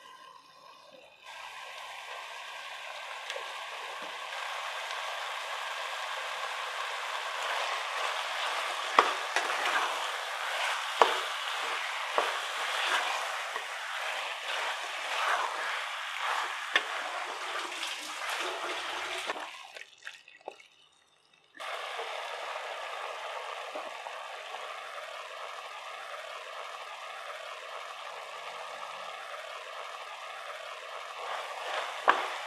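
Mutton pieces sizzling in hot oil and masala in a pressure cooker pan, with a spatula stirring and knocking against the pan. The sizzle drops out for about two seconds near two-thirds through, then carries on steadily.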